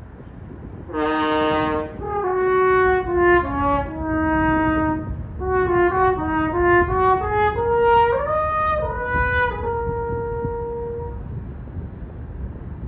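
Solo French horn playing a slow, unaccompanied melody. It opens with a loud, bright note about a second in, followed by two phrases of held and moving notes. Near the end the last note is held and fades away.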